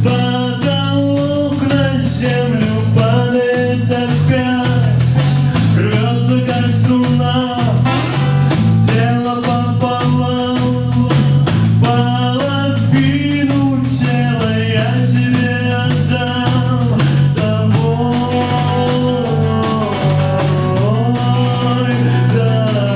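A small live band playing a song: a male lead vocal over guitar, electric bass guitar and drums.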